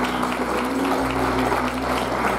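Audience applauding while the piano and band hold the closing chord of a gospel song.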